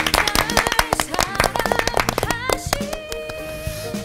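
A small group of people applauding, the clapping thinning out and stopping about three seconds in, while a soft closing music cue with sustained tones fades in underneath.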